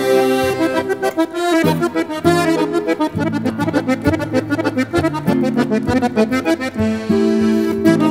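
Instrumental folk music led by a trikitixa, the Basque diatonic button accordion, playing a quick-moving melody over held bass notes.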